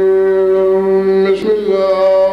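A man chanting in long, steady held notes, melodic recitation rather than speech. There is a short break about one and a half seconds in before the next held note.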